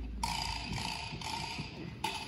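A pause in a school concert band's piece: the echo of the band's last chord dies away in the gymnasium, leaving faint rustling and small clicks with a faint high held tone.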